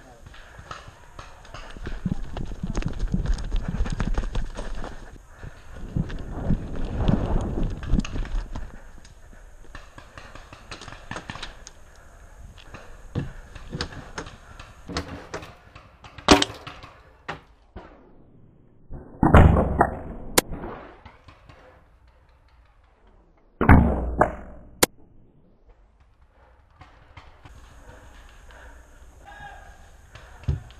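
Rustling and footsteps of a player moving through brush with his gear, then a scattering of sharp pops from paintball markers firing, with two louder thuds a few seconds apart in the second half.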